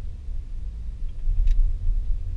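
A loud, uneven low rumble, with one sharp click about one and a half seconds in.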